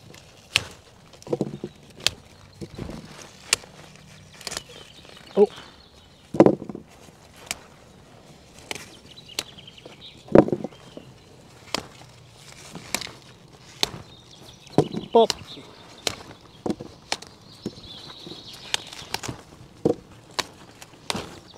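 Brussels sprouts being snapped off the stalk by hand: a string of sharp clicks and snaps at an irregular pace, roughly one a second, a few of them louder.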